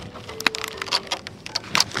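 Shrink-wrapped multipack of plastic water bottles crackling and clicking as it is gripped and lifted. It is a quick string of sharp crackles, the loudest about half a second in.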